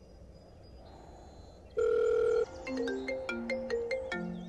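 Mobile phone ringtone: a loud held beep about two seconds in, then a quick melody of short electronic notes stepping up and down.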